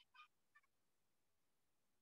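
Near silence: room tone, with two faint, brief squeaks in the first half-second.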